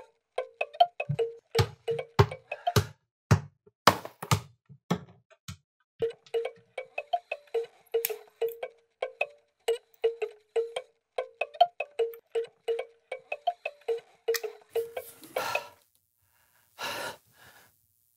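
A crank-operated prop box chiming as its handle is turned: a short note repeats about three times a second and stops about fifteen seconds in. A few low thumps sound in the first five seconds.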